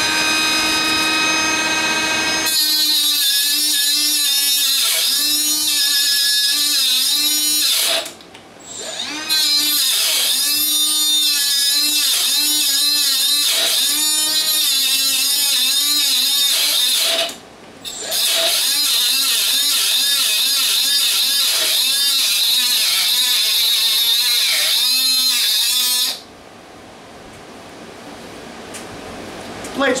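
Milwaukee M12 2522-20 3-inch cordless cutoff saw with a half-worn carborundum abrasive wheel cutting through steel threaded rod. The motor whines at free speed for a couple of seconds. Then comes a loud grinding hiss as the wheel bites, with the motor pitch wavering under load. The sound breaks off briefly twice, about 8 and 17 seconds in, and stops about 26 seconds in when the rod is cut through.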